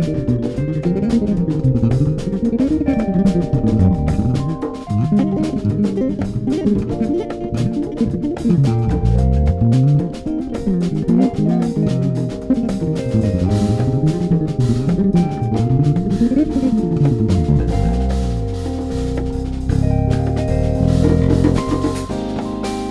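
Electric bass solo on an extended-range bass. Fast runs climb and fall again and again, with drums and held chords from the band behind. Near the end the runs give way to lower sustained notes.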